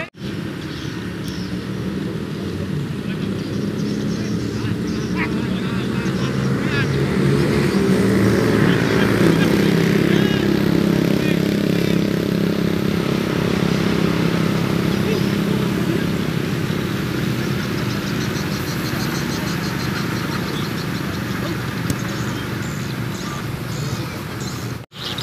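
A steady engine-like drone that grows louder around the middle and then eases off, with voices in the background.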